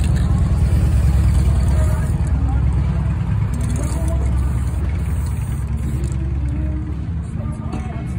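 A loud, steady low rumble with faint background voices, with short hisses from an aerosol spray-paint can.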